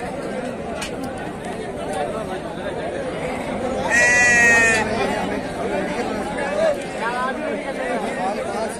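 A sheep bleats once, loudly and with a wavering pitch, about four seconds in, for under a second. Another, fainter call comes near the end, over a steady babble of many voices.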